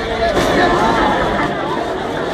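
Dense crowd chatter: many people talking at once in a steady babble, with a brief click about half a second in.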